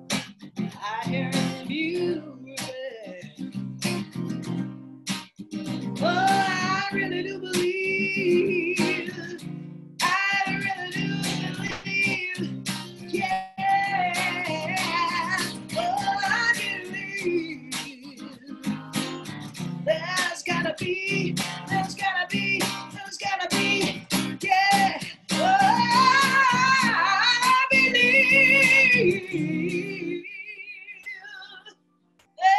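Acoustic guitar strummed steadily while a woman sings wavering, wordless melodic lines over it, rising to its loudest, highest notes in the last few seconds.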